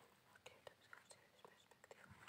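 Near silence: room tone with faint, scattered small clicks.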